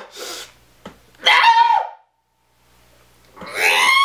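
A man's strained vocal effort while hanging one-armed from a pull-up bar. There is a short breathy grunt at the start, a strained groan about a second in, and then, near the end, a loud, long, high-pitched straining scream that holds one pitch.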